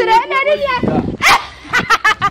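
A man talking excitedly, with a loud, sharp outburst about a second in.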